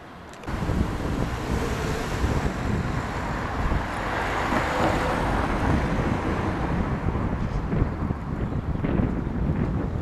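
Wind buffeting the microphone: a loud, rough rumbling noise that starts abruptly about half a second in and carries on unevenly.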